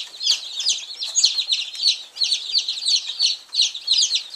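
A large brood of two-day-old chicks peeping continuously, many short, high-pitched, falling peeps overlapping in a dense chorus.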